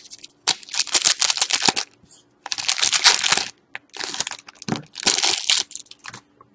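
Foil wrapper of a hockey trading-card pack being crinkled and torn open by hand, in about four loud spells of crinkling a second or so apart.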